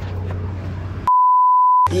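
A steady, single-pitched beep of about three-quarters of a second begins about a second in, with all other sound cut out beneath it, in the manner of an edited-in censor bleep. Before it there is background noise with a low steady hum.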